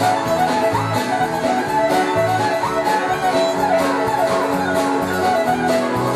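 Live country band playing an instrumental passage, a fiddle leading over strummed acoustic guitar, bass and a steady drum beat.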